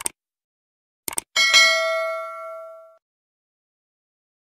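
Animated subscribe-button sound effects: a short mouse click, then two quick clicks about a second in. A bright bell ding follows and rings out for about a second and a half.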